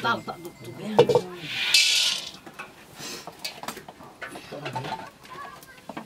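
Wood fire crackling under an iron wok of maize kernels roasting: scattered sharp clicks, a louder knock about a second in and a brief hiss just before two seconds, with faint voices in the background.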